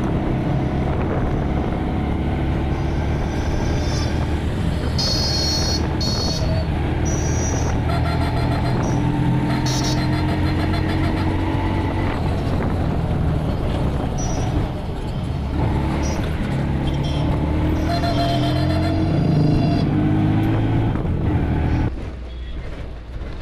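Auto-rickshaw engine running steadily under load, heard loudly from inside the open cab, with street-traffic noise around it. Short high-pitched tones come and go several times over the engine.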